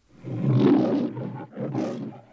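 A big cat roaring twice, the first roar longer and louder than the second.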